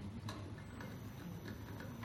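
Several light clicks at irregular spacing over a steady low hum.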